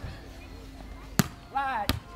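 A volleyball being hit twice by players, two sharp smacks under a second apart, with a short shouted call from a player between them.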